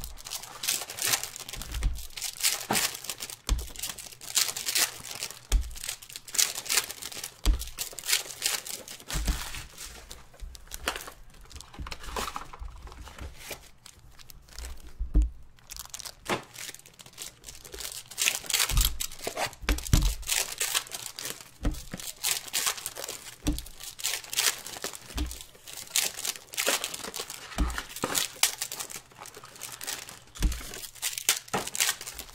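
Foil trading-card pack wrappers crinkling and tearing as Panini Prizm basketball packs are ripped open and the cards handled, with a steady, irregular crackle. Occasional low thumps come in between.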